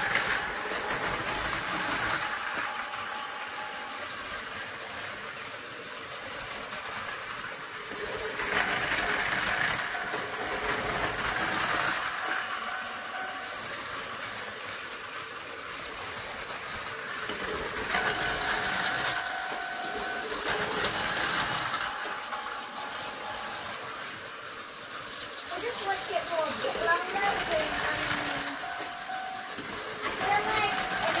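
Battery-powered Tomy Plarail toy trains running laps on plastic track: a steady small-motor whine with wheel clatter that swells roughly every nine seconds as the trains pass close by.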